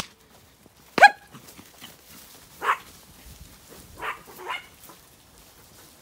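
A dog barking while herding sheep: one sharp, loud bark about a second in, then a few shorter, quieter barks.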